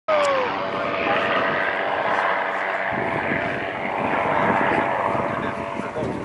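Aerobatic airplane's piston engine and propeller running in flight overhead, with a pitch that falls over the first half second as it passes. Wind buffets the microphone from about halfway through.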